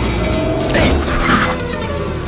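Trailer music playing over a brief mechanical noise from inside an old taxi, about a second in.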